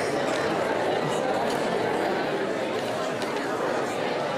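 Many students talking in pairs at the same time: a steady hubbub of overlapping conversation in which no single voice stands out.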